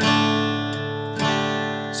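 Acoustic guitar strummed twice, about a second apart, each chord ringing on and fading: simple one-finger G and D chords.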